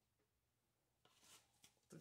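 Near silence: room tone, with a few faint, brief rustles and clicks of handling about a second in.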